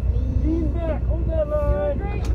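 Several people's voices, short calls or sung phrases, over heavy wind rumble on the microphone.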